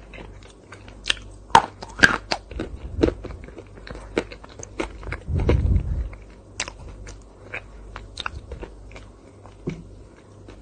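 Close-miked mouth sounds of eating: crisp bites and crunchy chewing in irregular clicks and crackles, with a low rumble a little past halfway.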